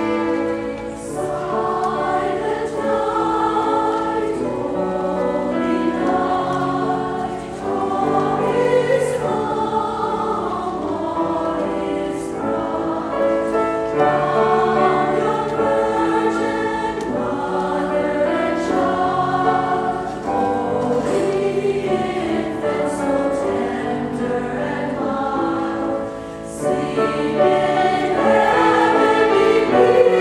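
A mixed choir singing a Christmas choral piece in sustained phrases, accompanied by strings and piano with a steady low bass line.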